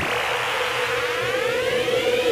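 Electronic music build-up: a held synth tone with a noisy swell, and a synth sweep rising steadily in pitch from about a second in, typical of a riser before a dubstep drop.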